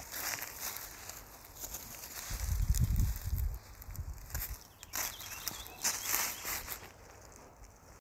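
Footsteps crunching and rustling through dry fallen leaves and twigs on a forest floor, in scattered irregular steps. A low rumble sits under the steps about two to three seconds in.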